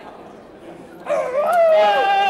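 A Deaf man's loud, drawn-out yell, starting about a second in and held on one high pitch.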